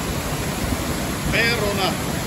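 Steady rush of water pouring down a dam spillway cascade into a rocky pool, with a brief voice about one and a half seconds in.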